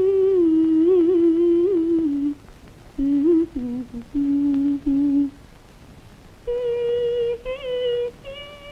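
A woman humming a slow, lilting tune in short phrases, with a pause of about a second a little past the middle.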